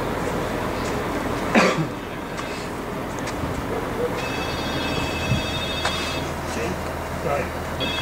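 A mobile crane's engine running with a steady low hum while it holds a fibreglass pool shell in the air. A sharp knock sounds about one and a half seconds in, and a high ringing tone sounds for about two seconds around the middle and again near the end.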